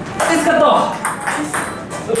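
Table tennis rally: the celluloid ball clicking off the players' bats, one of them faced with short-pips (pips-out) rubber, and off the table, about two hits a second. A voice sounds over the hits in the first second.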